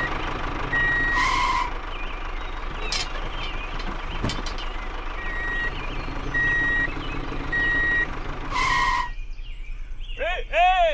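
Vehicle reversing alarm sounding short, evenly spaced beeps over a steady engine rumble: the signal of a vehicle backing up. The beeps pause through the middle stretch and resume at about one a second near the end. The engine sound drops away just before the end.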